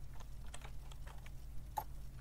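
Typing on a computer keyboard: irregular key clicks, with one louder keystroke near the end, over a steady low hum.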